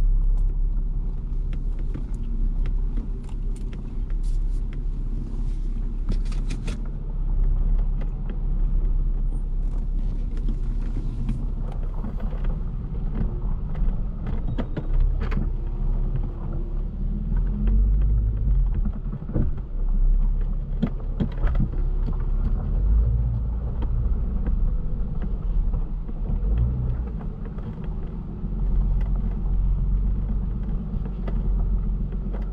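Car driving slowly on a gravel road, heard from inside the cabin: a steady low rumble with scattered clicks and ticks, thickest in the first few seconds and again midway.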